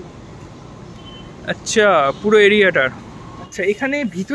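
A loud person's voice calling out with a fast-wavering pitch for about a second, about two seconds in, followed by talking near the end.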